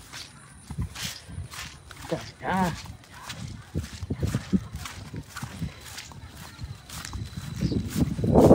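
Footsteps and knocks from a handheld phone while walking, irregular and fairly soft, with a person's short call about two and a half seconds in.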